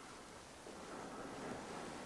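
Quiet room tone: a faint, even hiss that swells slightly in the middle.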